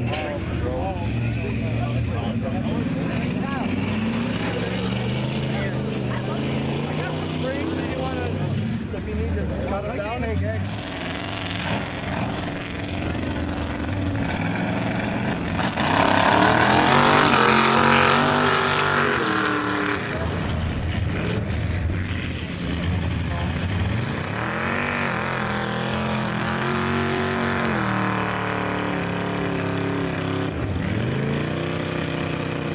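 Lifted mud trucks' engines revving hard through a mud pit, the pitch climbing and dropping with each burst of throttle; the loudest, fullest run comes about halfway through.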